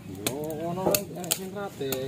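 A person's voice talking quietly, with a few sharp clicks among the words.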